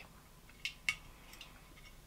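Two light clicks of fingernails catching on the pull tab of an aluminium drink can as it is worked at one-handed, the can not yet opened.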